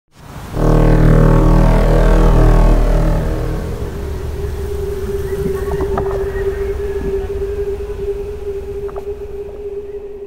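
Ambient electronic music opening: a loud, low synthesizer chord swells in about half a second in, with a falling sweep over the next few seconds. It then thins to a single sustained synth tone.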